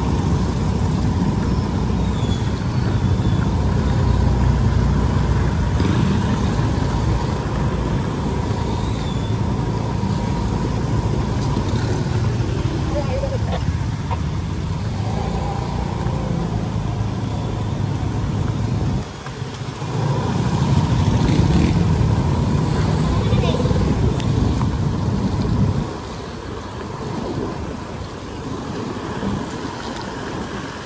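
Wind rushing over the microphone with the road noise of a vehicle riding along a wet road. The noise dips briefly about 19 seconds in and is quieter from about 26 seconds on.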